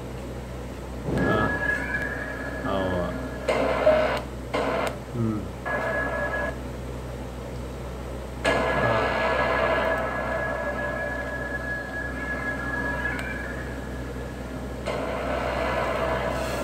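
A man's voice in short phrases, without clear words, over the first few seconds. About eight seconds in, a steady high-pitched tone with a hiss underneath comes in and holds for several seconds.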